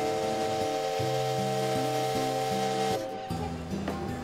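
A paddle steamer's steam whistle blowing one long, steady chord with a hiss of steam, cutting off about three seconds in, over background music.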